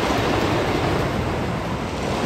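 Wooden roller coaster train running along its wooden track: a steady rushing rumble that eases slightly near the end.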